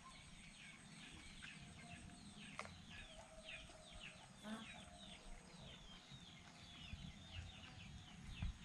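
Faint chirping of birds: many short calls that each fall in pitch, several a second, running on steadily.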